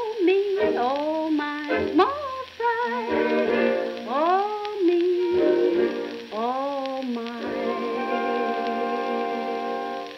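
The closing bars of a 1938 swing-band 78 rpm shellac record: sliding, swooping band phrases, then a final chord held from about seven and a half seconds in and starting to fade near the end, over the record's surface hiss.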